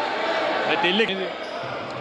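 Basketball game in a sports hall: a ball bouncing on the hardwood court over the steady noise of the crowd, with a man's voice commentating briefly.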